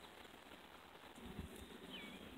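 Near silence outdoors: faint background hiss, with a few soft low thumps in the second half and a faint short chirp near the end.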